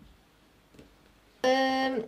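A quiet stretch with one faint tick, then about a second and a half in a woman's voice holds a single steady pitch for about half a second: a drawn-out hesitation sound made while deciding what to use.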